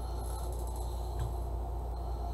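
Steady low hum of room tone, with one faint light tick a little after a second in.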